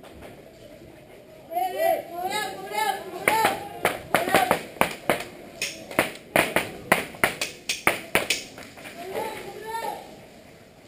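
Airsoft rifles firing in an exchange at close range: a quick run of sharp shots, about three a second, for some five seconds in the middle. Shouted voices come before the shots and again near the end.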